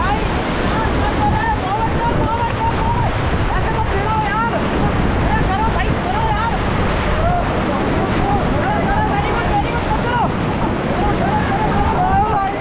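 Rushing whitewater of a river rapid, loud and steady, churning around an inflatable raft, with wind buffeting the microphone.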